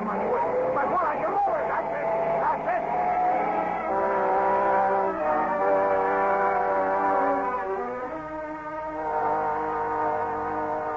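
Car engine revving hard with rising and falling pitch, wheels spinning, for about the first three seconds, as a radio-drama sound effect. From about four seconds in, a dramatic orchestral music bridge of sustained chords takes over.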